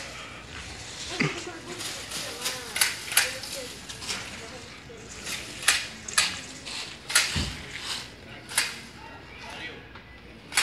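Homemade pole-mounted Tramontina shears, worked by a pull rope, snapping shut on tree branches: a dozen or so sharp metal clicks at irregular intervals, with one heavier thump about three-quarters through.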